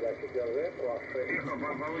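A voice from an amateur radio contact on the 40-metre band, received by an RTL-SDR Blog V3 with SDR Sharp and played aloud. The speech is narrow and thin, cut off above about 2.4 kHz, over steady band hiss.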